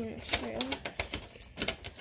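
Small sharp clicks and taps of a metal TV-mount bracket and its screws being handled and fitted against the back of a TV, several irregular clicks in quick succession.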